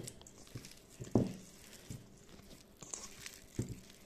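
A hand kneading a soft mixture of minced chicken breast, spinach and breadcrumbs in a stainless steel bowl: faint squishing and crumbly rustling, with a thump about a second in and a smaller one near the end.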